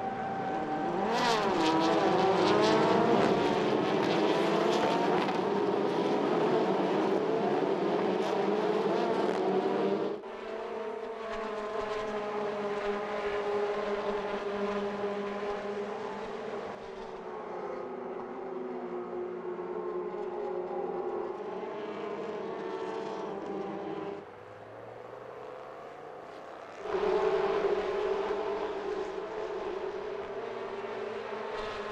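A pack of Formula Renault 2.0 single-seaters racing, their four-cylinder engines revving high with the pitch rising and falling as they accelerate, change gear and pass. The engine sound is loudest for the first ten seconds, then drops and jumps abruptly several times.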